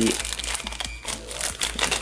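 A clear plastic bag crinkling in irregular crackles as a metal RC flywheel is pulled out of it by hand.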